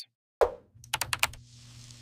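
A single click, then a quick run of about five clicks, over a low steady hum that comes in about a second in; a soft high hiss near the end.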